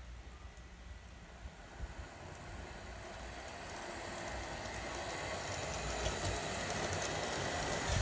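Large-scale model train running on track: a Bachmann Davenport locomotive's electric drive and the wheels of two Jackson Sharp passenger coaches rolling, with occasional light clicks, growing steadily louder as it comes nearer. The coaches squeak as they roll, because their copper power-pickup contacts rub against the wheels and drag on the train.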